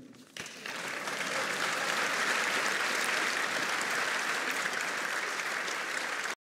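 Members of the European Parliament applauding in the chamber. The clapping starts about half a second in, swells quickly and then holds steady.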